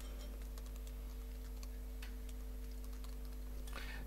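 Faint typing on a computer keyboard, irregular key clicks as code is entered, over a steady low electrical hum.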